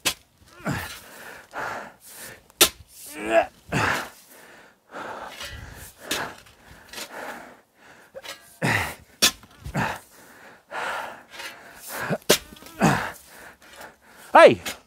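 A heavy steel garden hoe, its head cut from half a plow disc, chopping into and dragging loose soil: repeated sharp strikes every second or two between scraping through dirt. Short grunts and heavy breaths of effort come with several of the swings.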